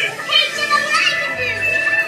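Excited children's voices over background music from a dark ride's soundtrack.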